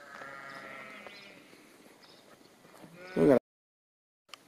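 Sheep bleating: a faint drawn-out call early on, then a short, loud, quavering bleat just after three seconds in that cuts off abruptly.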